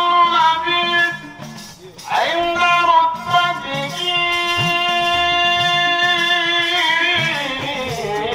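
A solo male voice chanting a Maulid ode through a microphone and PA in long, ornamented phrases. A new phrase opens with an upward slide about two seconds in, and a long steady note is held through the middle until near the end.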